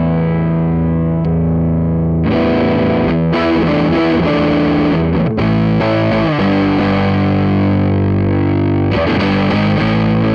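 Electric guitar, a Les Paul-style guitar with humbuckers, played through a Way Huge Green Rhino MkIV overdrive pedal into an amp, giving an overdriven tone. A held chord rings and fades, a new, brighter chord is struck about two seconds in and runs into a phrase of changing notes, and another chord is struck near the end.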